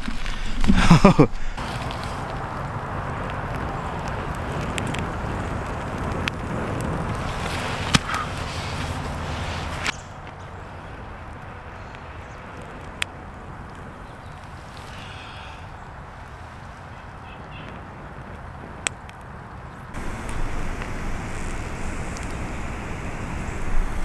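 Someone blowing on smouldering tinder to coax it into flame: a steady breathy rush, with a few sharp snaps. The sound drops quieter about ten seconds in and picks up again about twenty seconds in.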